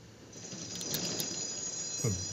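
Racetrack starting gate opening: the starting bell rings steadily from about a third of a second in while the gate doors bang open with a clatter about a second in, as the horses break.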